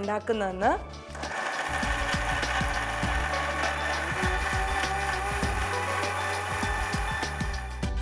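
Philips 750-watt mixer grinder running, blending tomatoes into a puree: a steady motor whine and grinding noise that starts about a second in and cuts off near the end.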